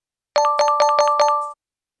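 Electronic reward chime from a learning exercise: six quick bell-like notes, about five a second, the last one ringing on briefly. It signals that the answers are correct, with a five-star score.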